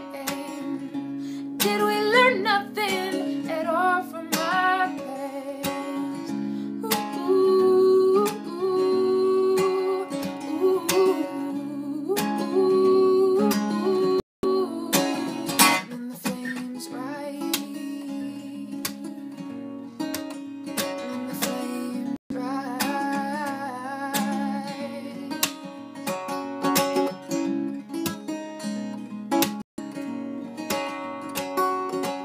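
A woman singing an original folk song while strumming a steel-string acoustic guitar. The voice comes and goes between guitar-only stretches, and the sound cuts out for an instant three times.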